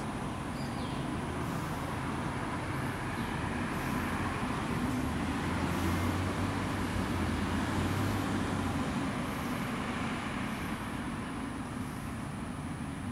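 Outdoor ambience of road traffic: a steady rumble with a low engine hum that grows louder in the middle and fades toward the end, as of a vehicle passing or idling nearby.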